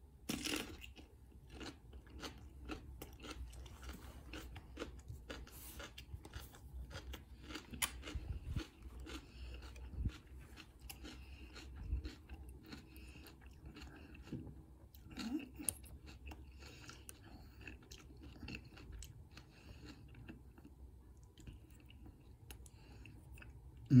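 A person chewing a bite of fresh jalapeño with soft, irregular crunches, a louder crunch about half a second in. Faint metallic clicks and scrapes of a pick and tension tool working in a worn dimple cylinder lock.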